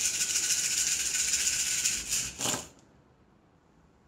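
A handful of cowrie shells rattled in cupped hands for about two seconds, then cast onto a cloth-covered table with a short clatter a little after two seconds in, for a cowrie divination reading.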